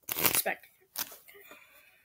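A deck of playing cards being shuffled by hand: a brief burst of card riffle noise at the start, then a single click about a second in.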